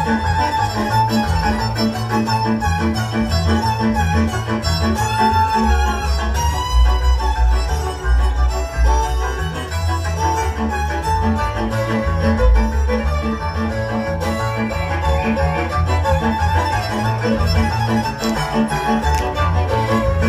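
Hungarian folk dance music on bowed strings: a fiddle melody over a steady, pulsing bass accompaniment.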